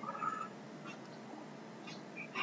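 A pause in the talk: faint room and microphone noise with a steady low hum, and a brief, faint high-pitched sound in the first half-second.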